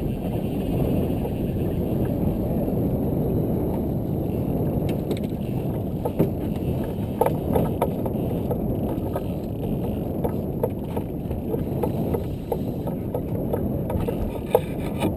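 Steady rumble of wind on the microphone aboard a small open boat, with scattered light clicks and knocks from about five seconds in as rods and reels are worked.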